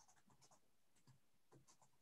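Near silence, with only very faint scattered ticks and rustles.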